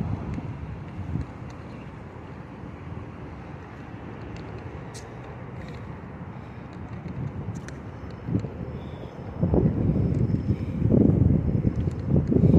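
Low, steady hum of city street traffic. About three-quarters of the way in, gusts of wind begin buffeting the phone's microphone, and this rumble grows louder to the end.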